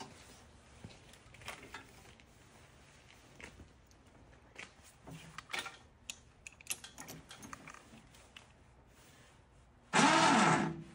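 Faint, scattered clicks and light knocks from handling the Batec front drive on the aluminium hitch carrier, busiest from about five to eight seconds in.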